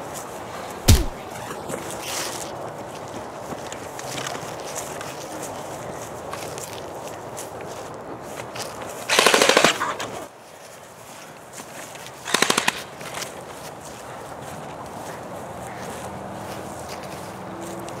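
Two bursts of automatic gunfire: about a second of rapid fire near the middle, and a shorter burst about three seconds later. A single heavy thump comes about a second in, over a steady background hiss.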